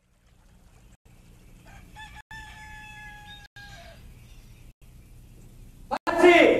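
A rooster crowing once: a single long crow from about two seconds in, held for nearly two seconds and falling slightly in pitch, over a low steady hum broken by short silent gaps.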